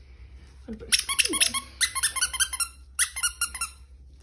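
Squeaker in a plush dog toy squeezed rapidly over and over, a high-pitched squeak with each squeeze, in three quick bursts.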